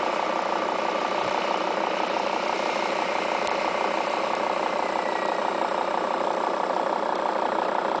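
Steady engine hum at a constant level, with no change in speed.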